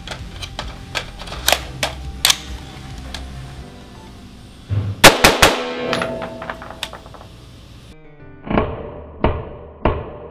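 Colt AR-15 firing three rounds of 5.56 M193 ball in quick succession in an indoor range, about halfway through. After a cut come three duller reports, spaced under a second apart, under background music.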